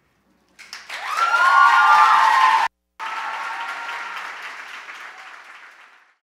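Audience applause with a few held cheers over it, loudest in the first half. The sound drops out for a moment just before halfway, then the applause comes back quieter and fades out near the end.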